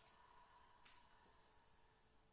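Near silence: quiet room tone with a faint steady hum, and one brief faint click a little under a second in.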